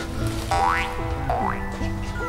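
Background comedy music: a simple melody in steady stepping notes, with two quick rising swoop effects a little under a second apart.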